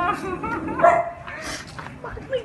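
Small dog barking, with excited voices around it; the loudest bark comes just under a second in.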